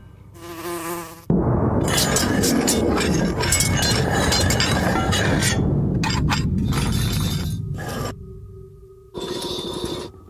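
A sudden loud burst of noise with clattering about a second in, fading away over several seconds, then a steady insect-like buzz near the end.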